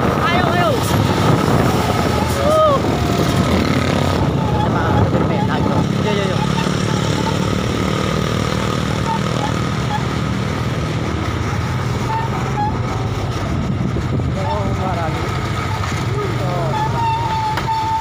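Truck engines running close by as trucks roll past and pull in, with a steady engine note in the middle of the clip. Voices call out over the engine sound.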